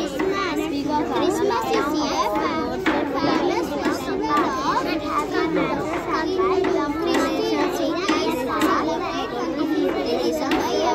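Many children's voices talking and calling over one another, a steady busy babble of a crowd of children.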